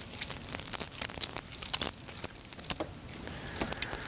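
Thin plastic wrap around the twisted pairs inside a shielded outdoor Cat5e cable being torn and peeled away by hand: an irregular run of crinkles and small snaps.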